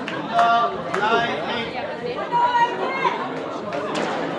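Chatter of several people in a large echoing hall, with a couple of clearer voices standing out.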